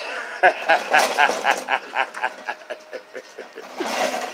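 A man laughing heartily, a quick run of "ha-ha" pulses about five a second that fades away near the end.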